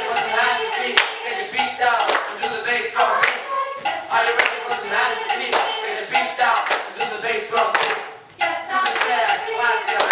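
Irregular hand claps and sharp percussive taps mixed with voices singing, dropping out briefly a little past eight seconds.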